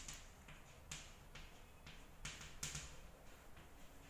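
Chalk writing on a chalkboard: a string of faint, irregular taps and short scrapes as letters are formed.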